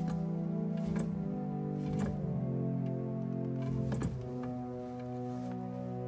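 Aeolian-Skinner pipe organ's pedal division sounding a held chord of notes played with the feet, heel and toe spanning the pedal keys. The chord changes about two seconds in and again about four seconds in, with faint clicks of the wooden pedal keys.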